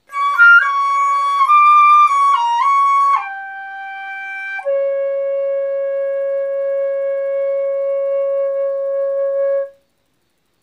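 Solo flute playing a short, quick run of notes, then stepping down to a quieter note and holding one long low note for about five seconds before stopping.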